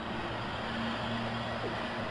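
Steady background noise with a low, even hum and no sudden sounds.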